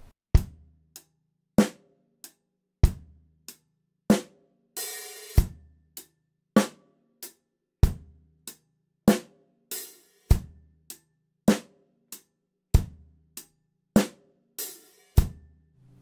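Acoustic drum kit played at a slow tempo: closed hi-hat eighth notes with bass drum on beats one and three and snare on two and four. On the last eighth note of each bar ('four and') the hi-hat is opened and rings as a longer hiss, then closes on the next downbeat. The bar repeats about three times.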